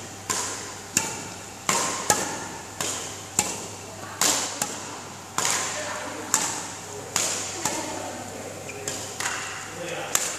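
Badminton rackets striking shuttlecocks, a dozen or so sharp hits at an uneven pace, each ringing on in a large echoing hall.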